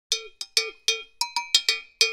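Sparse percussion in a music track: about nine quick struck hits in an uneven rhythm, each ringing briefly with a bright pitched tone.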